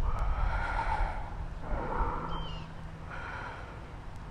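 A woman breathing hard and audibly, close to the microphone: about three long breaths in and out while exerting herself in seated leg lifts.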